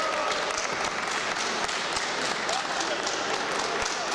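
A small crowd of spectators applauding, with many quick claps and voices calling out in a large hall, as an amateur MMA bout is stopped.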